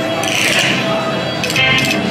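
Video slot machine spinning its reels: electronic game music with chiming, clinking tones as the reels land, a quick run of chimes near the end.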